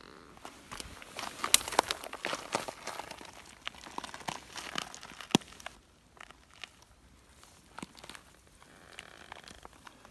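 Irregular rustling and crackling with scattered sharp clicks from a handheld camera being moved and dry grass and dirt being brushed, busiest in the first half and quieter from about six seconds in.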